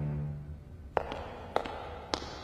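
Background music fading out, then four or five sharp steps on a hard floor, roughly half a second to a second apart.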